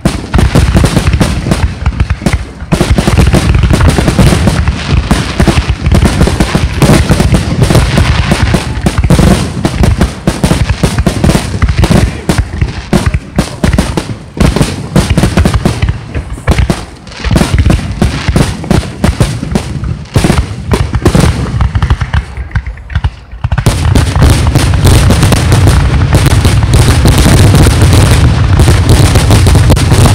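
Aerial firework shells bursting in rapid, almost continuous bangs. There is a brief lull about three-quarters of the way through, then an even denser barrage of overlapping bangs.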